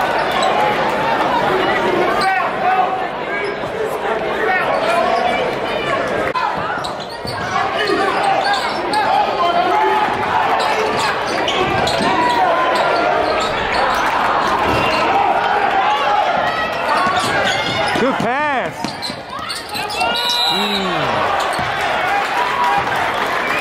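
Basketball game in a gymnasium: a steady crowd babble of many voices, with a basketball bouncing on the hardwood court and a short sliding squeal near the end.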